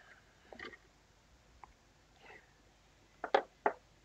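Mostly quiet, with a few faint clicks, then two sharper clicks near the end as small plastic miniature parts are handled.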